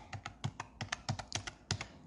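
A quick, irregular run of light clicks, about seven a second, like keys being tapped.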